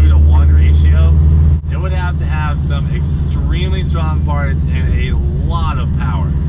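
Low, steady cabin drone of a supercharged C7 Corvette's LT1 V8 running under way, with loud headers and exhaust. The drone is heavier for the first second and a half, then drops abruptly to a lower hum.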